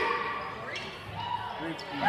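A basketball bouncing a few times on a hardwood gym floor during play, among the voices of spectators.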